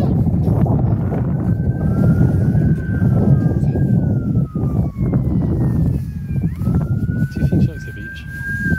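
Wind buffeting the microphone, with a faint wailing tone that slowly rises, holds and falls, twice, like a siren.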